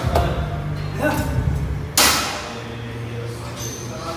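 Gym background of low music and voices, with a few light knocks and one sharp, loud knock about halfway through that rings out briefly.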